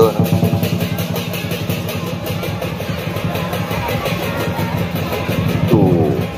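Lion dance percussion playing a fast, even beat, with a man's voice briefly at the start and again near the end.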